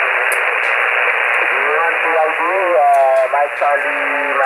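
Kenwood HF transceiver's speaker on the 40-metre band (7.095 MHz): a steady hiss of band noise, then about one and a half seconds in a thin, narrow-band voice comes through over the noise. It is a distant station's skip signal on the net.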